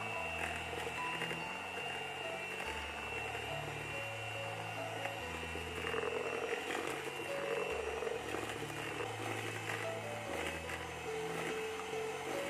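Panasonic MK-GB1 electric hand mixer running steadily with a high-pitched whine, its beaters creaming butter and sugar in a bowl. Soft background music with a low, slowly changing bass line plays underneath.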